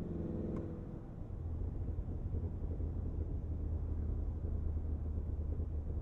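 Supercharged 6.2-litre V8 of a Cadillac Escalade V on overrun, heard from the cabin: with the exhaust baffles open and the throttle lifted, the exhaust keeps up a long run of crackling over a steady low drone, likened to a fireworks finale.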